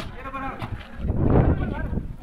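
Crowd voices at a volleyball game, with a bleating, goat-like laugh from an onlooker. There is a sharp smack right at the start.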